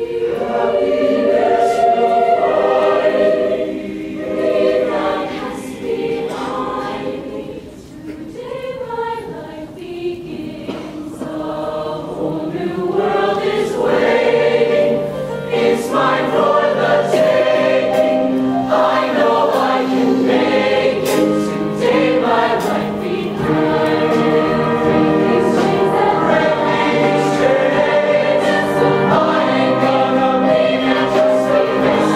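Mixed show choir singing in harmony, quieter and sparser for the first dozen seconds, then swelling to a fuller, louder sound from about 13 seconds in.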